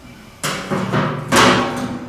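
Heavy cast-metal outboard water-jet drive housing set down on a steel platform scale: two resonant metal clunks, the second and louder one about 1.4 seconds in, each ringing on briefly.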